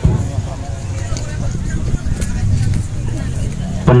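Spectators chattering on the touchline of an outdoor football pitch, over a low, steady rumble.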